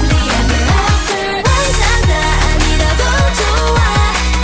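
Upbeat K-pop song with female group vocals singing over an electronic pop backing, with deep bass and punchy kick drums that drop in pitch.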